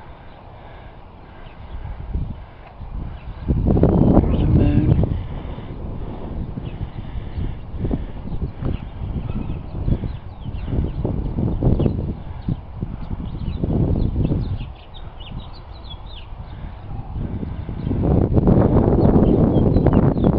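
Wind buffeting the microphone in uneven gusts, the loudest about four seconds in and again near the end.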